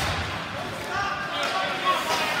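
Ice hockey rink sound: indistinct spectator voices, with low dull thuds from the play on the ice near the start.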